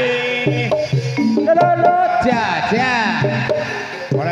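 Javanese gamelan music accompanying a kuda lumping horse dance: tuned percussion playing a stepped melody over hand-drum strokes, with a voice sliding up and down in long arching phrases.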